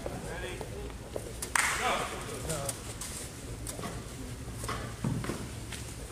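A few sharp slaps from the sambo wrestlers' bare feet and hands on the mat as they circle and grip-fight, the loudest about a second and a half in and another near the end, among shouting voices in a gym hall.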